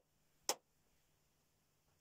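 One sharp hand clap about half a second in, dying away at once with no ringing or echo: the dead decay of a room treated with acoustic tiles, very short and free of the flutter-echo ping.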